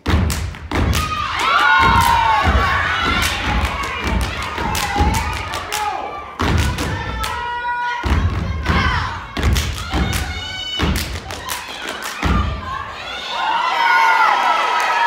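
A step team stomping and clapping in rhythm, with heavy thumps from feet on the stage floor starting abruptly at the top. Voices cheer and whoop over the stepping throughout.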